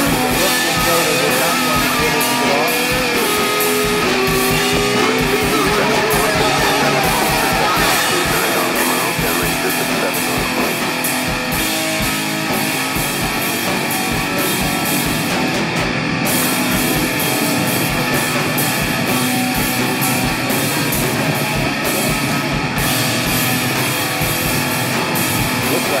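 Shoegaze rock music: a dense wall of distorted electric guitars over a drum kit, at a steady loudness, with a wavering melodic guitar line over the first several seconds.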